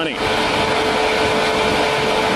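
Steady hum of an idling police SUV close by, with one constant whine held over an even rushing noise.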